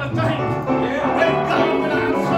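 Live country-style church band music with plucked guitar and an electric bass guitar line.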